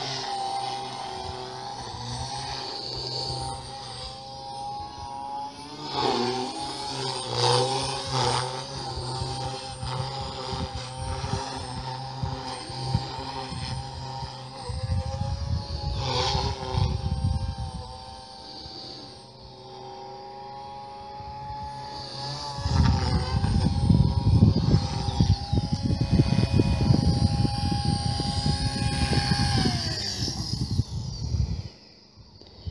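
Electric OXY 3 RC helicopter in flight, its motor and rotor giving a steady whine that dips briefly in pitch a few times as it manoeuvres. A louder low rumble joins in during the last third.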